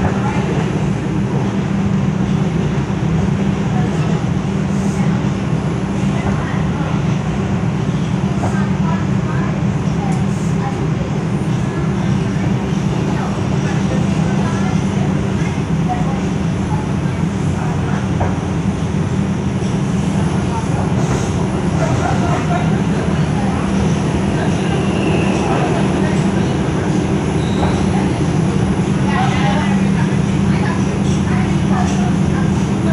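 R142 subway car running between stations, heard from inside the car: a steady, loud rumble of wheels on rails and the car's running gear that holds even throughout.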